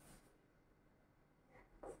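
Near silence, broken by a few faint, short chalk taps on a blackboard: one at the start and a couple near the end.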